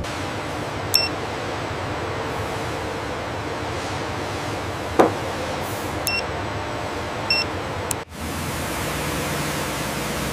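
A handheld paint coating-thickness gauge gives short electronic beeps about a second in and twice more between six and seven seconds, over a steady hiss, with a single sharp tap about halfway through. After a brief drop-out near the end, the steady rush of high-pressure water jets spraying a car takes over.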